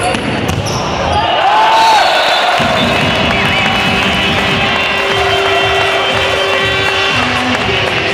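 Echoing noise of a futsal match in a sports hall: shouting from players and spectators, with one note held for several seconds in the middle, over the thuds of the ball being played on the court.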